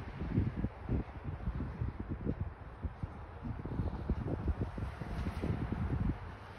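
Wind buffeting the phone's microphone: an uneven, gusty rumble with no steady tone.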